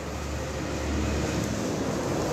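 Steady low rumble with a hiss over it: outdoor background noise on a phone microphone, slightly louder from about a second in.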